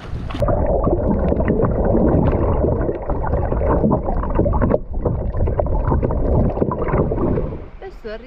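Sea water gurgling and rushing around a camera microphone held underwater beside a kayak's hull. The sound is heavily muffled, with a dense crackle of bubbles. It turns suddenly dull about half a second in as the microphone goes under, and clears again just before the end as it comes out.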